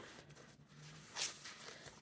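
Paper rustling as hands shift stacked, aged cardstock pages and cards, with one brief, louder rustle about a second in.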